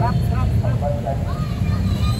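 Several bystanders' voices talking and calling out around the table, over a steady low rumble.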